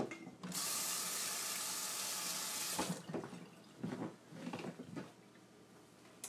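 Kitchen sink tap running for about two and a half seconds while hands are washed, then turned off abruptly. A few faint knocks and rustles follow.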